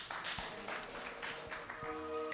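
Audience applauding, a dense patter of many hands clapping. Music starts near the end.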